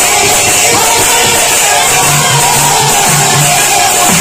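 Loud live Sambalpuri kirtan music: a barrel drum beaten in quick runs of strokes under sustained melodic tones.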